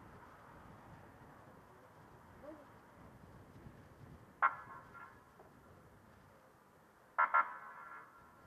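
Distant police car giving short warning-signal blasts, one about halfway through and a quick double blast near the end, over faint steady background noise.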